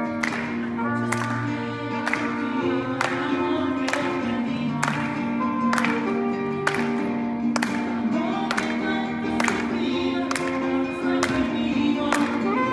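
Live band playing: saxophones holding and shifting sustained notes over guitar and a steady beat of about one hit a second.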